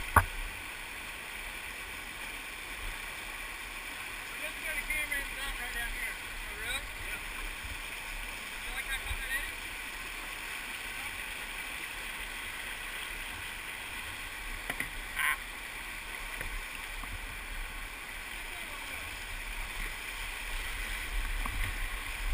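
Whitewater rapids rushing steadily around a kayak, heard close from the boat, with one brief sharp sound about fifteen seconds in.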